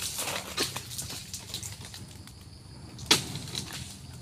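Crackling, rustling sounds with scattered clicks, fading out after about a second and a half, then one sharp knock about three seconds in.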